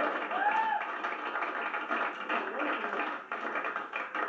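Crowd of many people talking and calling out at once in a packed room, with a voice rising above the din and a few sharp taps or claps.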